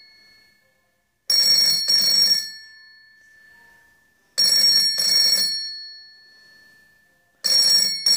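Vintage 801 PMG rotary dial telephone's mechanical bell ringing in the double-ring cadence: pairs of short rings about every three seconds, each pair ringing on and fading before the next. Two full pairs sound, and a third begins near the end.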